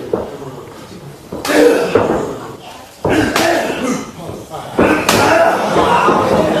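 Pro-wrestling bout: three sharp impacts, about a second and a half apart, as bodies or strikes land in the ring. Each impact is followed by shouting voices.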